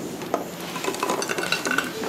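Freshly fried bolinhos de chuva (sweet fried dough balls) dropping from a metal pan into a glass baking dish: a quick scatter of light, dry clicks and knocks, with metal and glass clinking. The sound of them landing shows their crisp crust.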